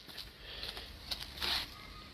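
Faint background hiss with a brief soft rustle about one and a half seconds in.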